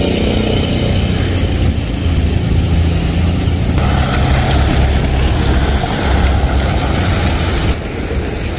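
Vehicles driving past on a wet paved street, engines running and tyres on the wet road, over a steady low rumble.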